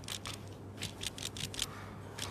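Quick, irregular rustling and scratching strokes, several a second, from hands rubbing and working over a person's knee through clothing.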